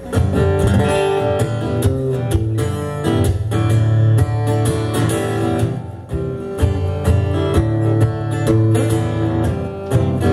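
Acoustic guitar strummed in a steady rhythm as the instrumental opening of a pop song, with a brief drop in loudness about six seconds in.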